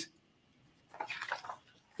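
A picture book's paper pages handled and turned, a brief faint rustle with a few light clicks about a second in, after a moment of near silence.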